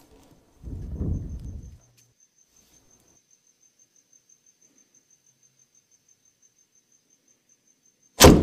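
Crickets chirping in a faint, rapid, even pulse, with a low rumble lasting about a second near the start.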